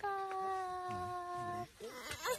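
A high voice holding one long note that slides slightly down in pitch for about a second and a half, then stops.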